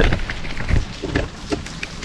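Handling noise from a hand-held camera: fingers rubbing and knocking on the body as it is turned, a string of short scrapes and clicks, over the steady patter of rain.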